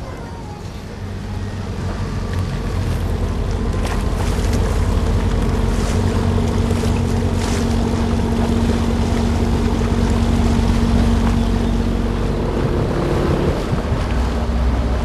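An engine running with a steady low hum, growing louder over the first four seconds and then holding even.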